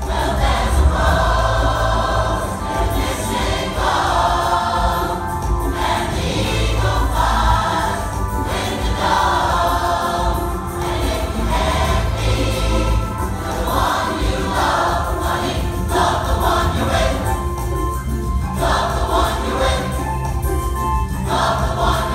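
A large mixed choir singing a rock song live in phrases, over a steady amplified bass accompaniment.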